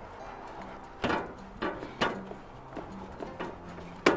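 Five or so short, irregular scrapes and knocks of cheese being grated and worked by hand, over quiet background music with a low bass line.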